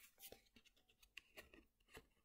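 Faint scattered rustles and light ticks of a tarot card being slid off a table and lifted up in the hand.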